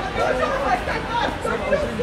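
Passers-by chattering on a busy pavement: several voices talking close by, with no single event standing out.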